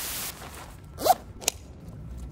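A burst of TV-static hiss that cuts off after a moment. It is followed by a low rumble, a short rising rasp about a second in, and a sharp click.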